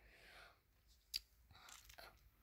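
Near silence, with a single brief click a little past halfway.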